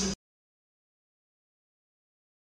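Sound cuts off abruptly a fraction of a second in, and then there is complete silence: the audio track drops out.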